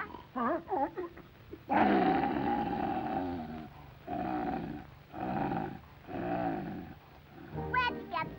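Cartoon wolf growl sound effect: a few short wavering pitched notes, then one long rough growl followed by three shorter growls about a second apart.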